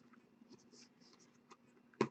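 Near silence: faint rustles and one light click about one and a half seconds in as trading cards are handled, over a low steady hum.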